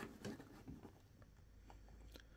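Near silence, with a few faint taps and rustles from plastic action figures being turned on their stands.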